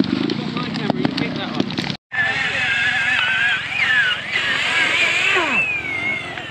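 Trials motorcycle engines: a bike close by running at low revs for about two seconds, then, after a sudden cut, a bike revving up and down as it is ridden, its pitch wavering and rising and falling.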